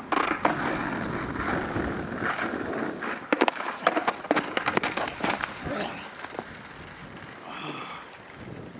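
Skateboard on rough asphalt: wheels rumbling for the first few seconds, then a flurry of sharp clacks and knocks from about three seconds in as the wooden deck slaps and clatters on the tarmac.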